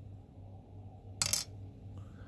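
A small gold nugget dropped onto the plastic weighing pan of a digital pocket scale: one short, bright clatter about a second in.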